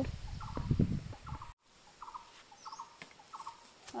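Short, repeated calls of birds in the background, several a second at times, including one thin high chirp. For the first second and a half there is a low rumble of the phone being carried while walking, then the sound cuts off suddenly and the calls continue over quieter ambience.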